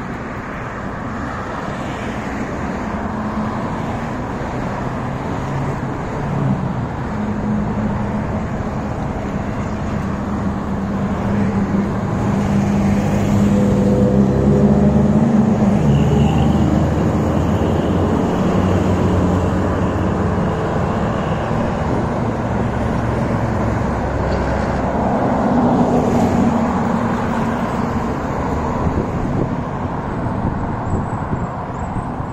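Road traffic on a multi-lane street passing close by: car and truck engines humming and tyres rolling, a steady wash that swells louder in the middle as heavier vehicles go past.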